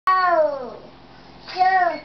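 A toddler's two wordless, high-pitched vocal calls. The first is long and falls in pitch; the second, about a second and a half in, is shorter and rises then falls.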